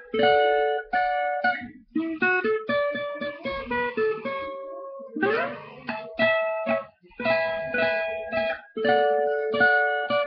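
An acoustic guitar plays a melodic solo of quick plucked single notes and chords, with a short break about five seconds in.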